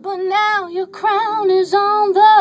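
A young woman singing a ballad unaccompanied, in short phrases with a wavering vibrato and brief breaths between them; no piano chords sound under the voice.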